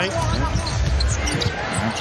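A basketball being dribbled on a hardwood court, with the TV commentator's voice in places.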